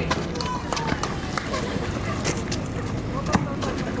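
Outdoor basketball play on a concrete court: players' running footsteps and a basketball bouncing make scattered, irregular knocks over a steady background, with faint distant voices.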